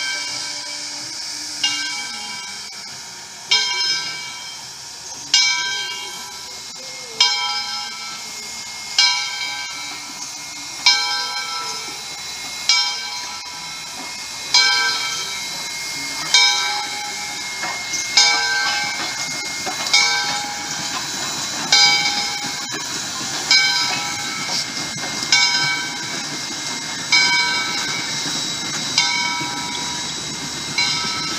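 Steam locomotive bell ringing steadily, one strike about every two seconds, each stroke ringing out and fading before the next, over a steady hiss of steam from Southern Railway 2-8-0 No. 630.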